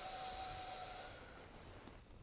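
A man's slow, faint in-breath, a deliberate deep inhalation, fading away toward the end.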